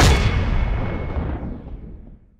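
A deep cinematic boom hit that strikes at once and fades away over about two seconds: the sound effect of a news channel's logo sting.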